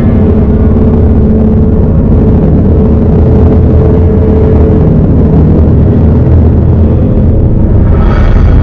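A loud, steady low rumbling drone from a horror film soundtrack, with a held tone over it that fades out about five seconds in.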